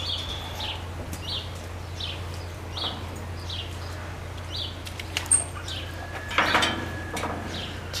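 A small bird chirping, short high chirps repeated at an even pace of a little over one a second, over a steady low hum. About six and a half seconds in there is a brief louder rustle.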